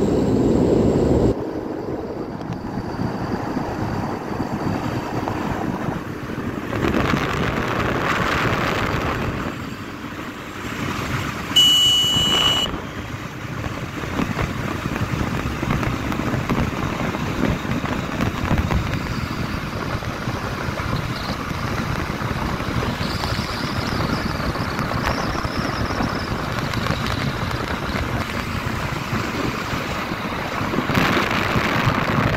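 Wind rushing over the microphone along with engine and road noise from a moving motorcycle, with louder gusts of buffeting in the first second or so. A brief high tone sounds about twelve seconds in.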